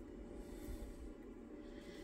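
Quiet room tone: a faint, steady hiss and low hum with no distinct sounds.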